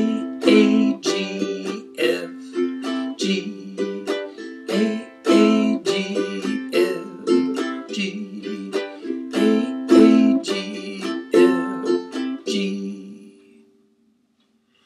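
Ukulele strummed in a quick, syncopated down-and-up pattern through an A minor, G, F, G chord progression. Near the end the strumming stops and the last chord rings out and fades away.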